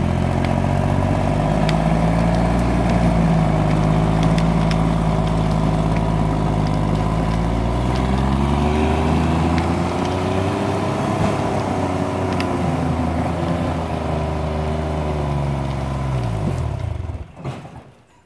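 Timberjack 225 cable skidder's diesel engine running under load as the machine drives through the woods. Its pitch rises and falls midway, then it winds down and stops near the end: the old engine cutting off.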